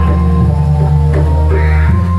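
Live music accompanying a kuda lumping dance: sustained deep bass tones under a held higher note, with regular drum strokes.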